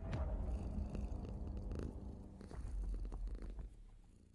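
A cat purring, low and pulsing, that starts suddenly and fades away near the end.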